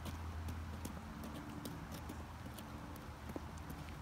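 A toddler's small rubber rain boots stepping on wet pavement: light, irregular taps and slaps, several a second, over a faint patter of rain.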